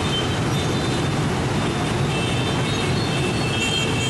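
Dense street traffic of motorbikes, cars and a bus at a busy intersection: a steady mass of engine and tyre noise, with high horn tones sounding more often in the second half.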